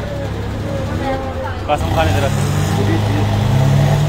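A motor vehicle's engine running close by, a steady low hum that grows louder about halfway through, in street traffic noise.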